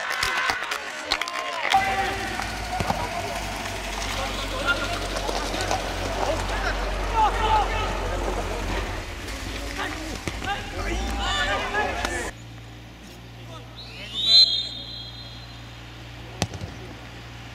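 Players' voices calling across a football pitch over a low rumble. About twelve seconds in the sound cuts abruptly to quieter, and about two seconds later comes one short, loud, high-pitched call.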